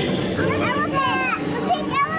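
Young children's high voices: excited chatter and calls that swoop up and down in pitch.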